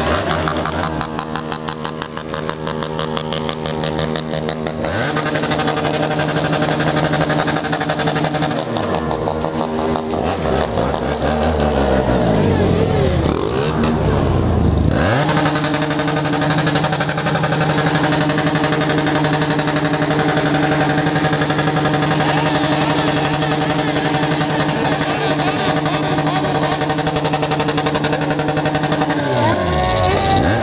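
A BMW F800GS parallel-twin engine with a cut-down open exhaust running at low speed. Its pitch sweeps up and down a few times around the middle and again near the end, then holds steady.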